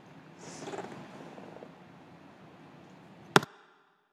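Low room noise with a soft rustle early on, then a single sharp click near the end, after which the sound cuts out to dead silence as the recording ends.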